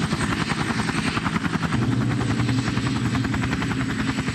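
Military helicopter in flight: a fast, even rotor-blade chop with a steady high turbine whine above it.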